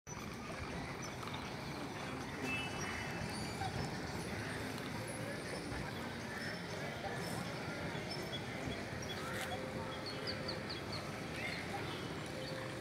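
Faint, distant voices of people over a steady background hiss, with a few brief high chirps about ten seconds in.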